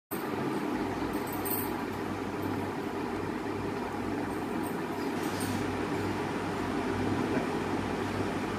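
Steady background noise with a low hum, and a few faint ticks.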